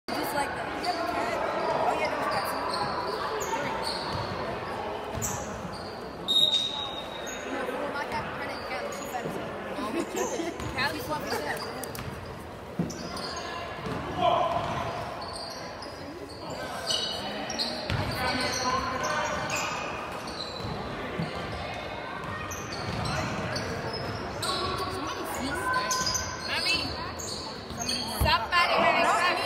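Basketball being dribbled on a hardwood gym floor, the bounces echoing in the large hall, over indistinct chatter of players and spectators.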